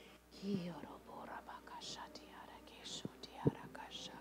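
Soft whispered speech, quiet murmured prayer, with a single sharp knock about three and a half seconds in.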